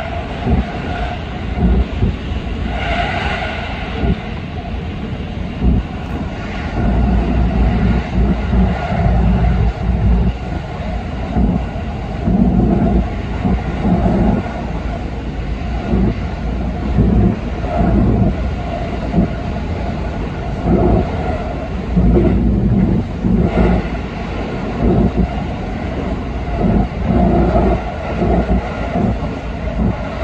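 JR 313 series electric train running through a tunnel, heard from inside the cab: a continuous rumble of wheels on rail that swells and eases unevenly, with a steady ring in the mid range.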